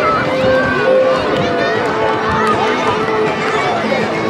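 A crowd of schoolchildren cheering and shouting, many high voices overlapping loudly.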